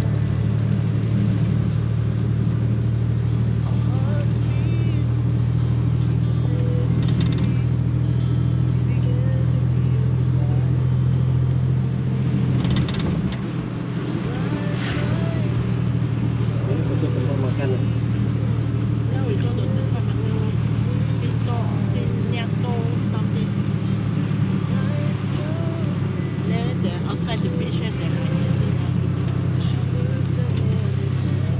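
Tuk tuk engine running steadily as it drives along, heard from inside the open passenger cab; the engine note dips briefly about halfway through, then picks up again.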